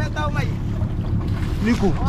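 Wind buffeting the microphone over a steady low rumble aboard a small open boat at sea, with brief snatches of voices near the start and end.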